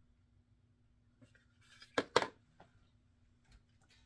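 Quiet room, then a light rustle and two sharp clicks in quick succession about two seconds in, with a few fainter ticks after: small cosmetic packaging being handled.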